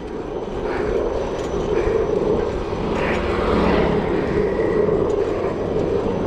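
Steady rushing wind and tyre noise from riding a bicycle along a paved road, the wind buffeting the microphone.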